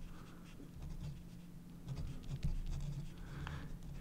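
Pen writing on paper: faint scratching strokes and small ticks as symbols of an equation are written.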